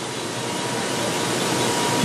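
Sugar-mill machinery running around a conveyor of freshly crushed, steaming sugarcane bagasse: a steady mechanical noise with a faint constant hum in it, growing slightly louder.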